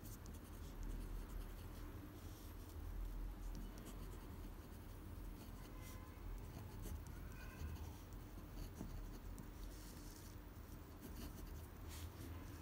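Faint scratching of a pen nib on paper as cursive words are written stroke by stroke.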